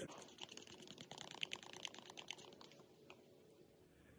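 Faint, rapid ticking and scraping of a stir stick working around the inside of a plastic mixing cup of two-part epoxy. The ticks thin out and fade away after about three seconds.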